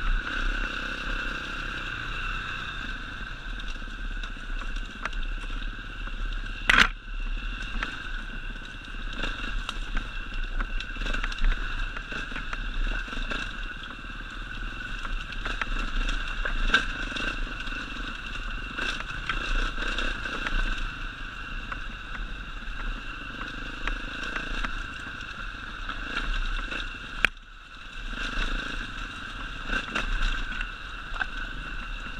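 Enduro dirt bike engine running steadily as it rides a rocky forest trail, with small clatters and two sharp knocks, about seven seconds in and a few seconds before the end.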